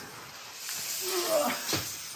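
Clothing scraping across a concrete floor as a person slides out on his back from under a car, a steady hiss that builds about half a second in and fades near the end.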